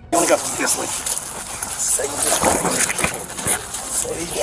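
Body-worn camera audio of a struggle on the floor: a man mumbling indistinctly, with scattered clicks and rustling against the microphone over a steady high hiss.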